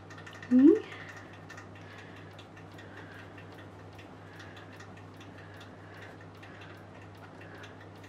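A short rising voiced sound about half a second in, over a quiet room with a steady low hum and faint, evenly spaced ticking.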